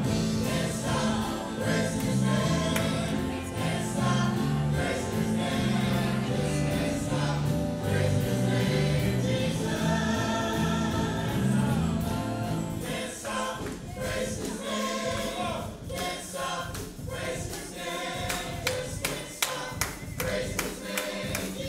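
A live worship band with guitars and several singers leading a worship song, the congregation singing along. A low bass line stops about two-thirds of the way through, leaving the voices over lighter accompaniment.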